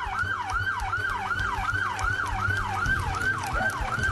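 Emergency vehicle siren in a fast yelp, its pitch dropping and snapping back up about three times a second.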